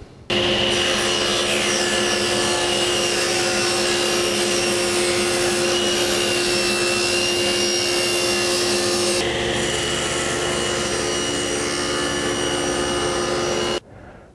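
Table saw running with a 10-inch 40-tooth carbide general-purpose blade ripping two-inch-thick oak: a steady motor hum under the whine and hiss of the blade in the wood. The sound starts and stops abruptly, and about nine seconds in the higher hiss suddenly drops away.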